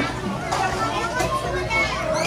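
Children's voices, talking and playing, with other people's speech around them.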